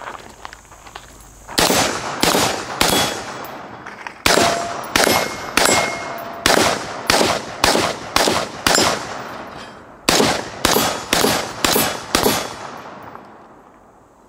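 AR-15 with a 16-inch .223 Wylde barrel firing .223 Remington rounds in semi-automatic shots. About eighteen shots come at roughly two a second, with a short pause about two-thirds of the way through, and each shot trails off in an echo.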